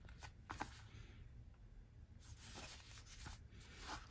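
Faint handling of a leather bifold wallet: soft rubbing of leather with a few light clicks as the ID flap and wallet are folded shut.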